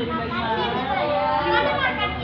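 Several people's voices talking over one another, with a child's voice among them; no words come through clearly.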